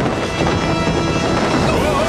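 Cartoon soundtrack of background action music with sound effects mixed under it, held at a steady level.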